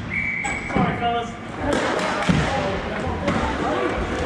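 Rink hockey in play in a large echoing hall: players' and benches' shouts, with several sharp knocks of sticks and puck or ball on the floor and boards.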